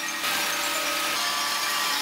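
Tracked combine harvester running steadily while harvesting rapeseed. Its engine and threshing machinery set in a moment in as a dense, even mechanical noise.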